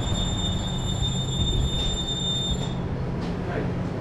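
A steady low hum with a thin, high-pitched electronic whine over it; the whine stops a little before three seconds in, and the hum carries on.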